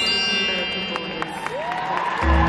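Bell-like musical chime playing over a sound system, several held tones ringing and slowly fading, with a short rising tone near the end.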